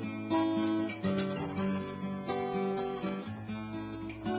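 Acoustic guitar strummed, with chords ringing out and changing every second or so.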